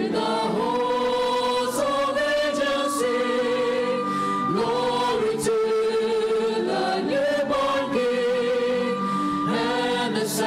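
Mixed choir of men and women singing a hymn in harmony, holding long notes that change every second or two. A small ensemble of violins, cellos, acoustic guitars and piano accompanies them.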